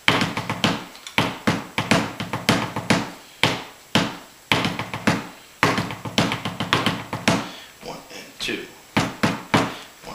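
Pipe band tenor drum mallets with felt heads striking a wooden tabletop in a quick, rhythmic pattern of several strikes a second. The strikes lighten for a moment around eight seconds in.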